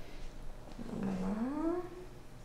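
A person's short wordless 'mmm' that dips and then rises in pitch, about a second in: the patient's pained reaction as the Botox needle goes into his face.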